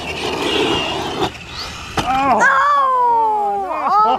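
An electric RC car running on a dirt track, a noisy whir with a faint high whine, then a sharp knock about two seconds in. After the knock comes a long drawn-out vocal exclamation that falls in pitch.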